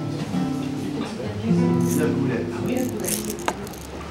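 Classical guitar playing a few ringing chords that are cut off with a sharp click about three and a half seconds in, with voices talking in the background.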